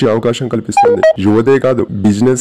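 A man's voice-over narration runs throughout. About a second in, a quick run of short electronic beeps at different pitches sounds under the voice.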